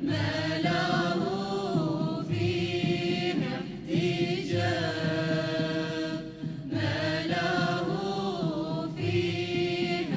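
Devotional song: sung Sufi-style poetry addressed to the Imam. The voices carry long, bending melodic phrases over a low beat that comes about every two seconds.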